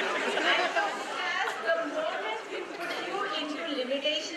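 Speech only: indistinct talking and chatter from several voices in a large hall.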